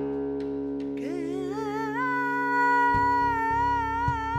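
Flamenco song: held string notes ring, then a woman's voice comes in about a second in, gliding up into one long held note with vibrato. From about three seconds in, cajón strikes join in.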